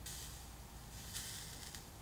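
Faint hissing from a lit match held to an absinthe-soaked lemon slice topped with sugar and cinnamon, a little stronger at the start and again about a second in.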